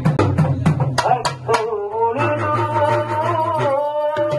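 Urumi melam drum ensemble playing: quick, dense drum strokes, then from about a second and a half in a long wavering held tone rises over the drumming. The tone is like the moaning note drawn from an urumi drum by rubbing its stick.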